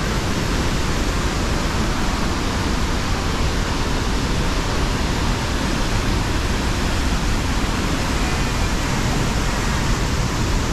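Steady rush of a large waterfall and the fast-running river below it.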